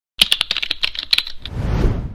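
Computer keyboard typing sound effect: a quick run of key clicks lasting about a second and a half, then a low rumbling swell that rises near the end and begins to fade.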